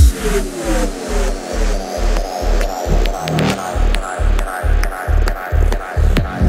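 Progressive techno track with a deep kick and bass pulse at about two beats a second (around 135 BPM). Falling synth sweeps glide down through the mid range.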